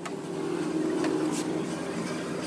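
Steady background hum with a faint pitched drone.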